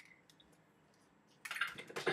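Quiet room, then about a second and a half in a short burst of rustling and light clicks as unboxed accessories, a power cord and brick, are handled.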